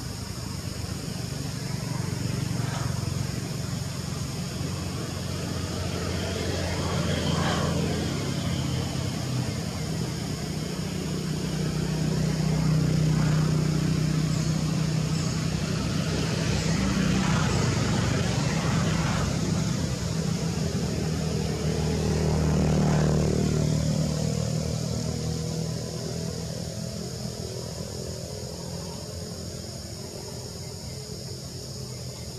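Engines of passing motor vehicles, the low hum swelling and fading several times, loudest about midway and again a little past two-thirds through.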